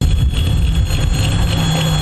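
ChME3 diesel shunting locomotive hauling passenger coaches past at close range: a steady engine hum over the rumble of the train on the track, with a thin steady high whine above.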